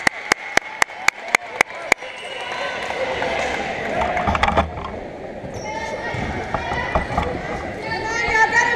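A volleyball bounced hand to hardwood gym floor about seven times, roughly four bounces a second, stopping after two seconds. Then voices and hall noise.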